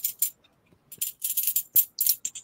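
Small metal objects jingling and rattling in three short, irregular bursts.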